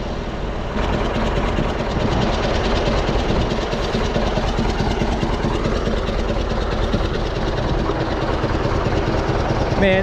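A bulldozer's diesel engine idling steadily.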